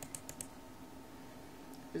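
Faint computer mouse clicks: a quick cluster of clicks just after the start as a folder is double-clicked open, and a couple more near the end, over a low steady hum.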